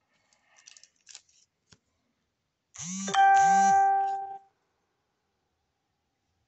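Soft rustling and clicking of trading cards being handled, then about three seconds in a loud single chime: one steady ringing note that starts abruptly over a low warble and fades out after about a second and a half.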